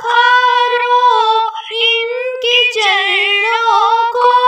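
A high female voice singing a Hindi Ram bhajan, holding long notes with slides and ornaments.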